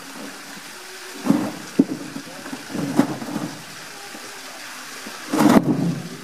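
Polar bear playing with a pink plastic toy at the edge of its pool: a series of knocks and thuds with water sloshing. The loudest, longest thud comes near the end.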